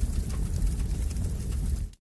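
Short transition sound effect: a low, dense noise that fades in, holds steady and cuts off abruptly near the end.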